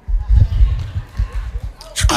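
Irregular low thumps from a handheld stage microphone being handled and passed between beatboxers, under faint voices. Beatboxing starts sharply near the end.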